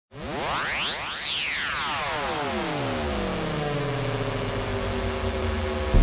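Synthesizer intro of an electronic spacesynth track: a cluster of tones sweeps quickly upward, peaks about a second in, then glides back down and settles into a held chord over a hissing noise wash.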